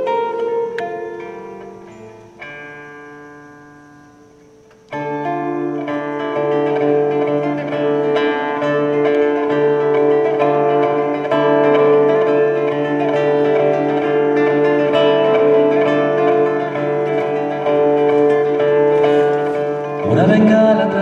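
Solo classical nylon-string guitar: a few plucked notes and a chord left to ring and fade, then about five seconds in a steady, louder picked accompaniment pattern over held bass notes begins, the instrumental opening of a trova song.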